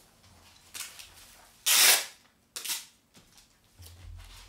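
A taped cardboard shipping box being opened by hand: packing tape tearing and cardboard flaps pulled apart, in three quick rips, the loudest and longest in the middle.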